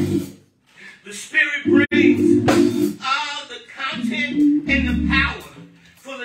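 A preacher's voice in a chanted, half-sung delivery through the church PA, with keyboard chords held beneath it in short blocks between his phrases, twice after the opening one.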